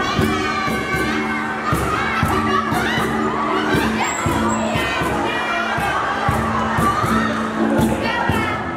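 A group of voices shouting and calling out loudly over rhythmic backing music with a steady beat.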